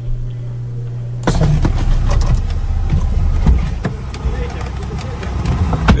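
A steady low hum, then about a second in, the noise of a car and street traffic heard from inside a car, with an engine running, wind buffeting and indistinct voices.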